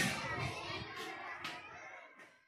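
Children's voices and chatter in the background, fading out near the end, with a short click about one and a half seconds in.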